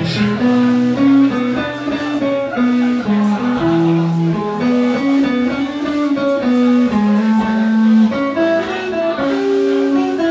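A blues band playing an instrumental passage: a guitar plays a line of single held notes, about one to two notes a second, over a low bass part, with no singing.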